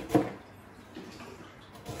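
Kitchen knife chopping through onion onto a plastic cutting board: a sharp knock or two right at the start, then a few faint cuts.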